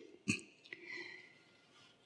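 A man's brief sharp intake of breath close to the microphone, followed about half a second later by a fainter breath.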